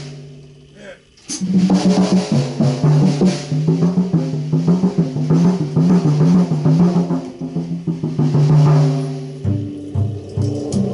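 Free-jazz drum kit and upright double bass improvising, with busy drum hits and low bass notes. About a second in the playing thins almost to nothing, then starts again with a sharp hit.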